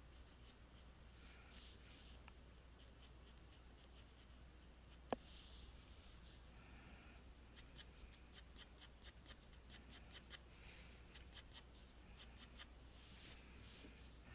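Graphite pencil sketching on paper: faint, quick, scratchy strokes in short flurries, with a single sharp tick about five seconds in.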